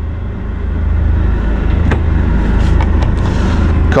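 Steady low rumble of a running machine, with a couple of faint clicks about two seconds in.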